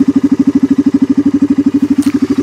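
ATV engine idling, with a steady, even pulse of about a dozen beats a second.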